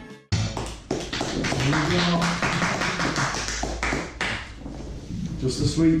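Background music cuts off at the start, then a metal fork repeatedly taps and scrapes on a plate and bowl, with room noise and snatches of voices.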